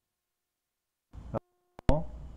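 The recording drops out to dead silence for about a second. It then comes back with a brief burst of background noise, a short steady electronic tone and a sharp click just before the voice returns.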